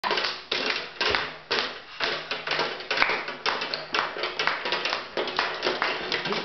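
Sharp knocks and clacks from small children banging toys on a wooden table, about two a second at first, then quicker and uneven.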